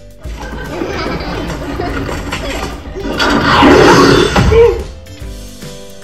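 Film soundtrack in a cinema: music mixed with voices, swelling to a loud, crash-filled passage about halfway through before falling back.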